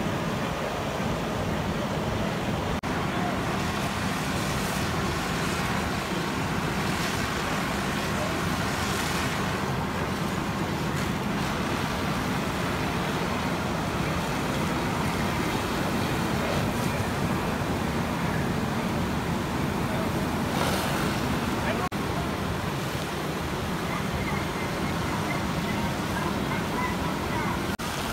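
Fire engines running, a steady rumbling roar with a hiss over it, and indistinct voices underneath. The hiss swells briefly twice, about a third of the way in and again later on.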